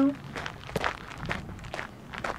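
Footsteps crunching on a loose gravel and broken-asphalt path at a walking pace, about two steps a second.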